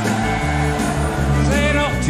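Live country band playing, with bass, guitar and drums, and a man singing a phrase near the end.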